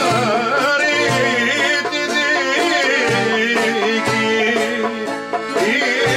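Greek folk song performed live: a man singing an ornamented melody with a laouto strumming and a small folk band accompanying.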